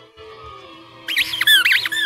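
A short musical sound effect: faint steady tones, then about a second in a loud, high-pitched warble whose pitch swoops up and down twice.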